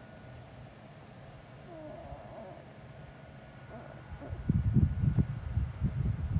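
Quiet outdoor background with a faint short call about two seconds in. From about four seconds in, loud, irregular low rumbling and buffeting on the phone's microphone.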